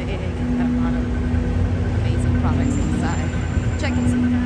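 Busy city street traffic: a steady low rumble of vehicles with a constant low hum, and brief snatches of voices.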